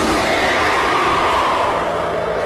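A monster's long, loud roar from an anime tailed beast, held steady and easing slightly near the end.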